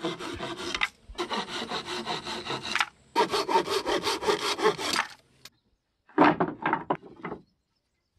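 Hand saw cutting through a pallet-wood board: quick back-and-forth strokes in three runs with short pauses between. After a second of quiet, a brief final cluster of wood sounds comes about six seconds in.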